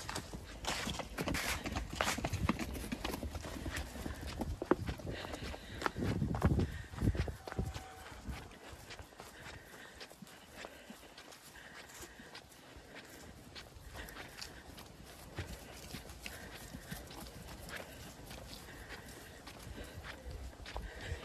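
Footsteps and sheep hooves on grass as a person walks close behind a few Zwartbles ram lambs trotting ahead. There is louder rustling and knocking for the first seven seconds or so, then a quieter run of small steps.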